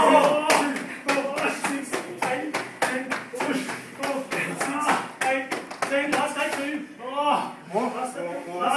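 Bare fists punching into a karate gi and the body beneath it, a run of sharp slapping hits about three a second, with people's voices going on over them.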